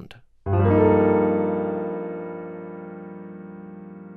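A piano chord struck once about half a second in and left to ring and slowly fade. It is an E-flat add 9 chord in second inversion, G in the bass, with an A natural on top as the sharpened eleventh.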